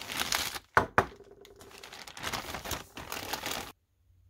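Plastic courier mailer bag being slit with a small blade and crinkling as it is torn open and handled, with two sharp snaps a little under a second in. The crinkling stops abruptly shortly before the end.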